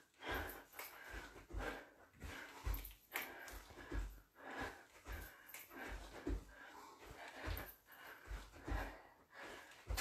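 A woman's short, hard exhalations, about two a second, in rhythm with her shadowboxing punches, with soft low thuds of her feet on the floor under each one.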